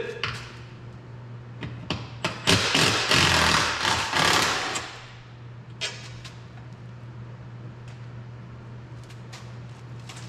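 Cordless power tool with a 14 mm socket zipping a bolt off a truck's air cleaner mounting: a few short clicks, then the tool runs for about two and a half seconds starting a couple of seconds in, followed by a clink near the middle.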